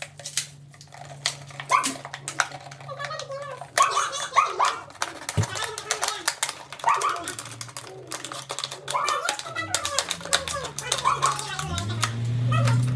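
Thin plastic bottle crackling and clicking as a box-cutter blade is worked through its wall to cut a square opening, a rapid irregular series of small clicks, with short squeaky notes every couple of seconds.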